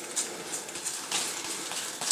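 Playing cards from a theory11 Hollywood Roosevelt deck sliding and rustling against one another as the fanned cards are pushed from hand to hand, in a few soft strokes.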